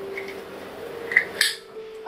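Dosa batter sizzling softly on a nonstick tawa over a low flame, with a couple of light utensil clinks about a second and a half in.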